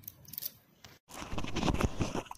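A metal spatula stirring and scraping a thick, thickening sweet batter in an aluminium kadhai: a few faint clicks at first, then from about halfway a close run of scrapes and clicks against the pan.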